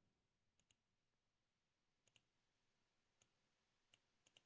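Near silence, broken by a few faint, separate clicks from a computer mouse.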